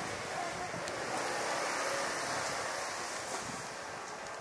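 Steady rushing outdoor background noise of a street market, fading slightly, with wind on the microphone.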